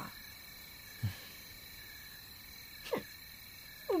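Night-time cricket ambience: a steady, high, even chirring. A short low sound comes about a second in, and a brief falling sound near the three-second mark.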